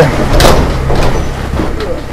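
Fists and a kick banging on a painted metal door, a loud bang about half a second in followed by lighter knocks.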